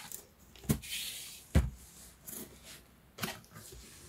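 Cardboard box being turned over and handled by hand: three dull knocks, the loudest about one and a half seconds in, with a brief scrape of cardboard between.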